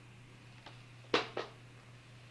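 A small plastic bag of metal keychains being handled, giving a few short clicks of metal hardware, the loudest about a second in and a second shortly after, over a steady low electrical hum.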